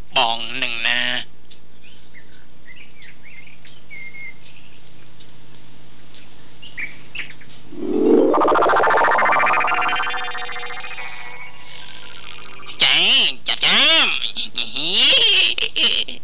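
A steady low hum with faint short chirps, then a loud pitched sound that sweeps upward over about three seconds and fades; speech is heard at the start and again near the end.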